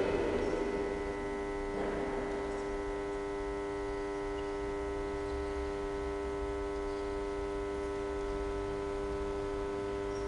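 Steady electrical hum, a cluster of held tones that does not change, with a low rumble underneath.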